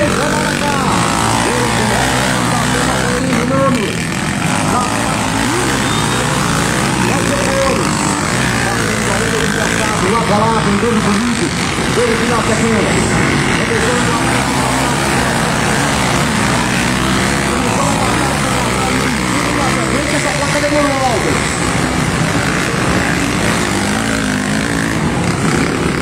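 Trail motorcycles racing on a dirt track at a distance, a steady mixed drone of several engines under load.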